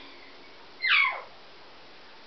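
Blue-and-gold macaw giving one short call that falls steeply in pitch, about a second in.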